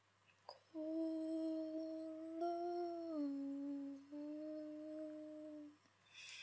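A woman humming long held notes in a small room. The pitch steps down a little about halfway and breaks off briefly before the hum resumes and fades out near the end.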